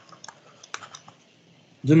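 Several light, irregular clicks from writing input on a computer as a word is underlined on a digital whiteboard; a man's voice starts speaking near the end.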